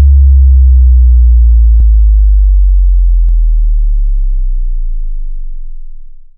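A very loud, deep synthesized bass tone, the sub-bass boom of a logo sting, that starts suddenly, slowly sinks in pitch and fades away over about six seconds. Two faint clicks sound in it, about two and three seconds in.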